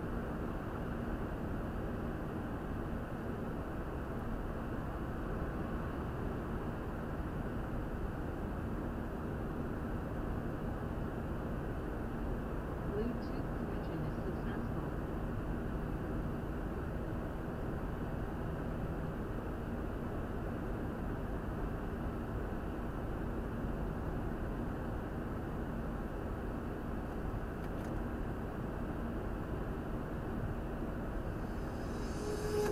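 Steady road and engine noise of a Mercedes-Benz car cruising through a road tunnel, heard from inside the cabin as an even rumble with no changes.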